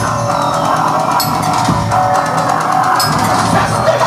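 A band playing live: a dense, loud mix of keyboard synthesizer, electric guitar and a drum beat, with a few sharp cymbal-like strokes.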